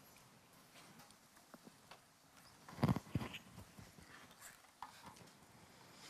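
A quiet room with scattered faint clicks, knocks and rustles as an audience leafs through Bibles to find a passage, with one louder brief knock about three seconds in.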